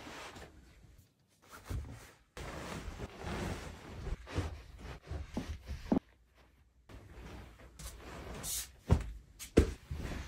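Bedding being handled: a duvet and pillow rustling and swishing as they are shaken out and smoothed. A few soft thumps come near the end.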